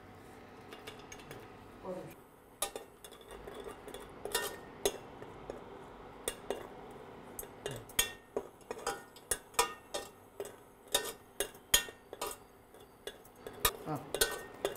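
Steel ladle clinking and scraping against a stainless steel pot while stirring cashews and raisins frying in fat. The clinks are scattered at first and come quicker and sharper in the second half.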